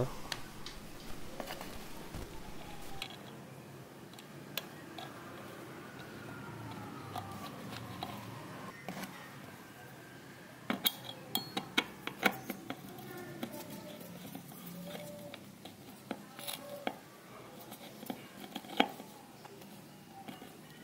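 Small metallic clicks and taps of a screwdriver working the screw terminals of a speed-controller board as wires are fastened in, in scattered bursts that come thickest a little past the middle.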